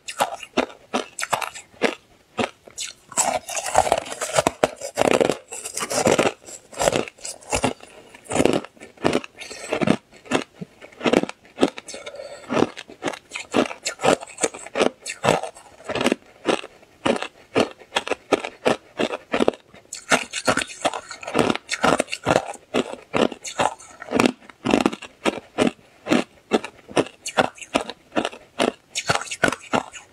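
Hard ice being bitten and chewed: a rapid, irregular run of loud crunches and cracks as the ice breaks between the teeth.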